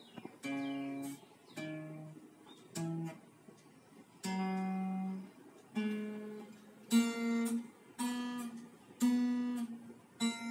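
Acoustic guitar played slowly by a beginner, single notes and plucks one at a time, each ringing and fading before the next, with a short pause about a third of the way in.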